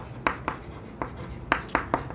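Chalk writing on a chalkboard: a series of short, sharp chalk strokes and taps as a word is written.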